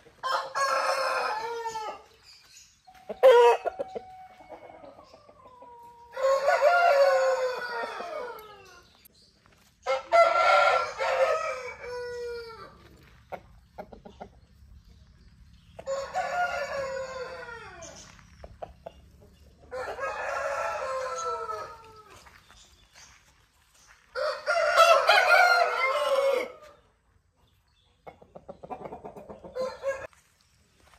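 Aseel gamefowl roosters crowing: about seven long crows, one every four seconds or so, each falling in pitch at its end. There is a single sharp knock about three seconds in.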